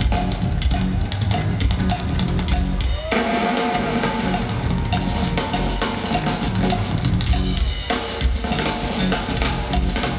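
Live rock drum kit playing a busy, steady groove with the band, bass drum and snare to the fore. About three seconds in the low end drops away for a moment and a gliding tone comes in, then the full beat returns.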